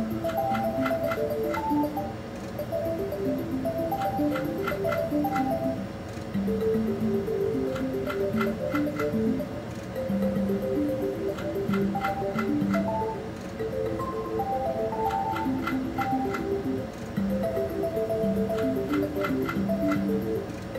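Mystical Unicorn video slot machine playing its reel-spin music, a melody of short notes, with a quick run of ticks as the reels stop. A new spin begins about every four seconds, each a losing spin with no win sound.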